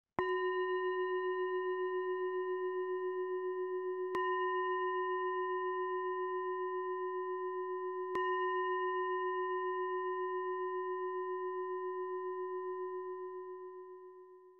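A meditation singing bowl struck three times, about four seconds apart, each strike renewing a long, clear ringing tone with a slow wavering pulse. The ringing fades away near the end.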